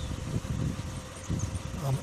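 A pause in a man's speech filled with low, rumbling outdoor background noise and a faint steady hum, ending with a hesitant "um" near the end.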